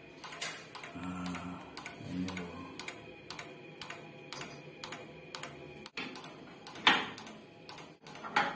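Bluegaz gas water heater's pulse igniter sparking over and over at the burner electrodes, about three sharp clicks a second, with a louder knock near the end. The burner does not catch: the heater keeps clicking but will not light.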